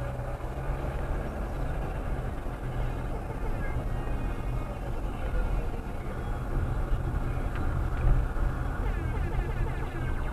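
Car engine and road noise heard from inside the cabin while driving slowly: a steady low rumble.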